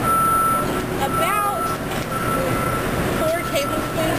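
A vehicle's reversing alarm beeping in a steady on-off pattern, about one beep a second, over street traffic noise and people talking nearby.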